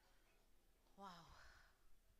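Near silence, broken about a second in by a woman's single soft, breathy "wow" that falls in pitch, like a sigh.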